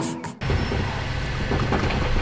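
Background music cuts off abruptly, giving way to a steady low mechanical hum from a fuel pump while a car is being filled.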